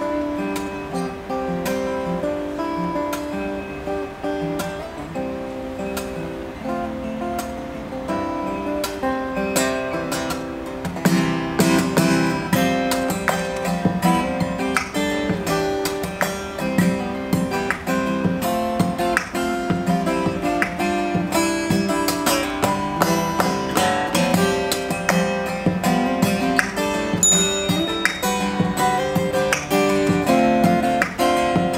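Solo acoustic guitar playing an instrumental piece. About eleven seconds in it grows louder and busier, with many sharp, percussive note attacks.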